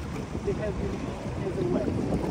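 Cruise boat under way on the lake, its engine running with a steady low rumble.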